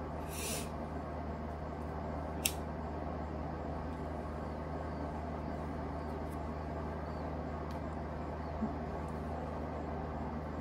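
Steady low hum of a small room, with a short hiss about half a second in and a single sharp click about two and a half seconds in.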